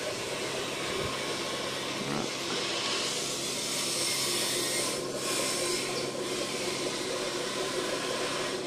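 Steady hiss of water circulating and aerating in guppy-farm tanks (water trickling in through the flow-through in-out plumbing and air lines bubbling), with a faint low hum underneath.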